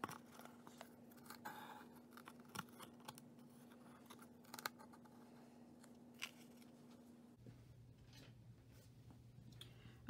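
Near silence with faint handling sounds: yarn being drawn through the notches of a cardboard loom, light rustles and a few soft clicks. Under it a low steady hum drops to a lower pitch about seven seconds in.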